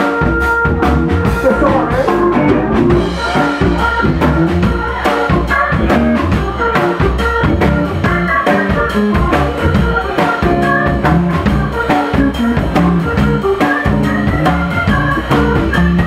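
Live band playing an instrumental passage: drum kit keeping a steady beat under electric guitar, sousaphone and keyboards.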